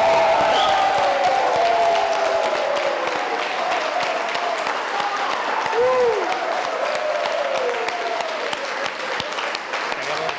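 Live audience applauding and cheering, with many voices calling out over dense clapping. The sound slowly fades toward the end.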